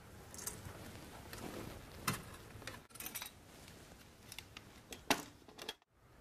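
Faint rustling and light metallic clinks of a recessed light's trim being worked loose and pulled down out of the ceiling can, with sharper clicks about 2 s and 5 s in.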